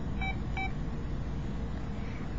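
A mobile phone beeps twice: two short electronic tones about half a second apart.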